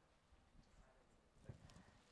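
Near silence: room tone, with a few faint soft knocks about one and a half seconds in.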